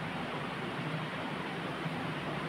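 Steady background hiss of room noise, even and unchanging, with no speech.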